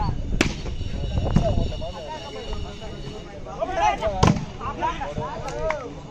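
A volleyball being struck hard by hands in a rally: sharp slaps about half a second in, again a second later, and once more past the four-second mark. Players and onlookers shout between the hits.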